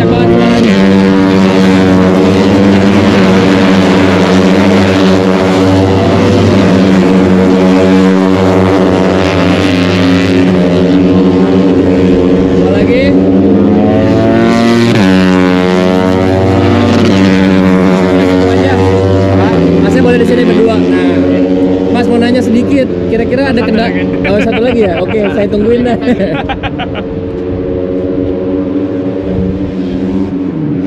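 Racing motorcycles running at high revs on the circuit just beyond the catch fence, a loud, sustained engine note whose pitch drops as a bike goes by about halfway through. The sound thins out over the last few seconds.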